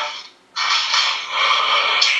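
A steady scraping, rustling noise, starting about half a second in and lasting about a second and a half.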